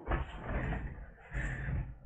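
Plastic bubble wrap and a foam sheet rustling and crinkling as they are carried in and handled, in two noisy stretches with a short dip about a second in.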